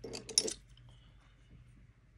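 A quick clatter of small hard makeup items knocking together as they are handled on the table, a few clicks in the first half second.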